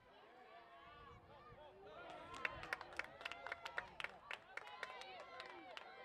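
Faint voices of a crowd and players calling out, with scattered claps. One held voice comes first, and from about two seconds in many voices overlap with frequent sharp claps.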